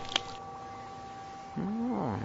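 A cartoon rat's voiced low grumble that rises then falls in pitch, starting about three-quarters of the way in, over faint held music notes. There is a short click just after the start.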